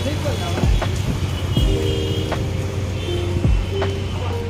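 Busy city street ambience: vehicle traffic and people's voices over a steady low hum, with music and a few dull thumps.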